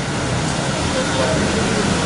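Steady road traffic noise, with a man's speech through a microphone heard faintly over it.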